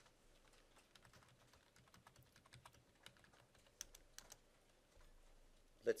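Faint computer keyboard typing: scattered key presses, with a few sharper clicks a little past the middle.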